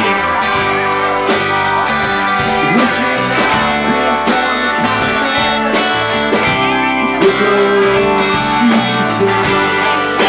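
Live rock band playing: electric guitars with bending, sliding notes over bass, keyboard and a drum kit keeping a steady beat.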